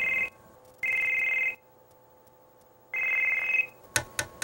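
Telephone ringing: three short bursts of a high, two-tone trilling ring, each under a second, with silence between them. A sharp click comes near the end.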